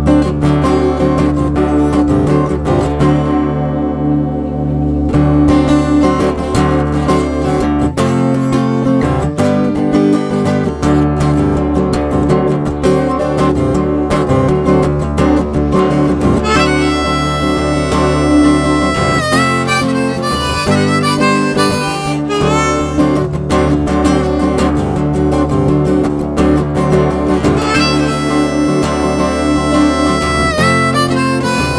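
Rack-mounted harmonica played over a strummed acoustic guitar, a bluesy instrumental break. From about halfway through, the harmonica holds long notes with bends.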